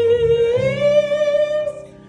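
Wordless humming of a Christmas tune: one long held note that steps up in pitch about half a second in, then fades out near the end.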